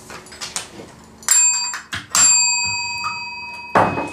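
A bell rung twice, about a second apart, the second ring holding and fading slowly: the signal that the game's time is up.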